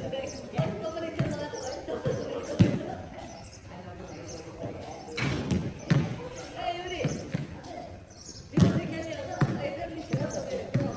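A basketball bouncing on a hard tiled court: irregular thuds, the loudest about two and a half seconds in and again near the end. Players' voices call out between the bounces.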